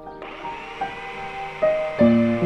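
Handheld belt sander mounted as a bench sander, its motor starting a fraction of a second in and then running steadily. It is heard under soft piano music.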